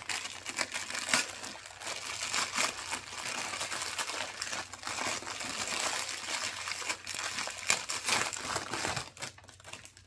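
Crinkly packaging crackling and rustling as it is handled to unwrap a fold-up drinking cup, a lot of noise, with many small crackles, easing off near the end.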